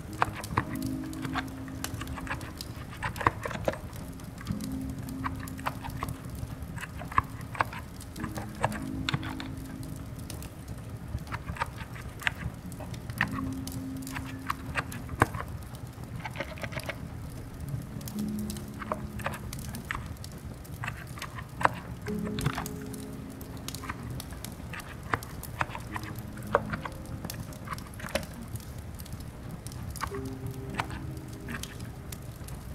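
Soft background music with low held notes, over irregular light clicks of quiet typing on a capacitive (silent) keyboard, with a steady soft hiss of rain beneath.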